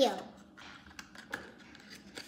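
A few faint, scattered taps and clicks from small toy kitchen items being handled, after the tail of a child's word at the very start.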